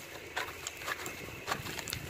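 Crumbly charcoal being scraped off a lump by gloved fingers, with grit and small chunks pattering onto a hard concrete floor. Irregular dry crackles and light taps come a few times a second.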